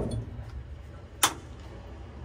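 A single sharp click of a panel toggle switch being flipped about a second in, switching on the aircraft's electrical power, over a faint low steady hum.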